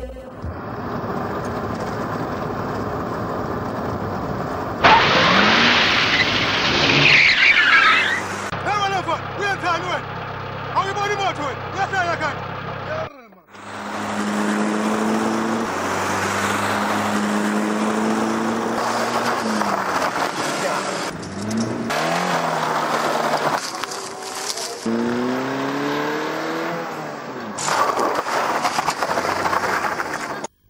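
People's voices mixed with a car engine, rising in pitch late on as the car drives off.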